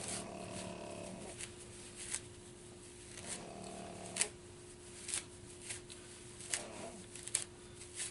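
Dry tulip poplar inner-bark fibres being pulled apart and rubbed between the hands, a soft rustling broken by scattered sharp crackles as the fibres tear. A faint steady hum runs underneath.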